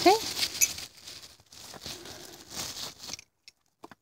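Plastic bubble wrap crinkling and rustling as it is pulled off sticks of chalk by hand, with small clicks as the sticks knock together. A brief rising voiced 'oh' comes at the very start, and the handling stops about three seconds in.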